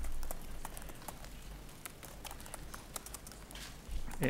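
Scattered sharp clicks of press cameras' shutters, irregular and overlapping, over a low steady room hum.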